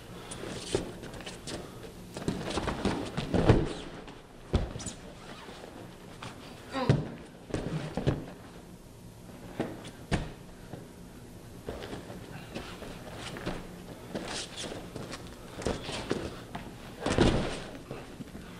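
Bodies and feet thudding and scuffing on a wrestling mat during a grappling takedown drill, with the loudest thud about three and a half seconds in as one man is taken down. Irregular thumps and shuffles follow.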